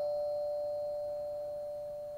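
The lingering ring of a two-note ding-dong doorbell chime, its two tones held together and fading slowly and evenly.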